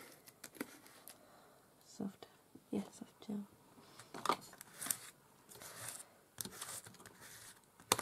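Flat brush spreading glue over a paper journal page and a hand rubbing the page down: soft, scattered brushing and rubbing strokes on paper. A single sharp click comes near the end.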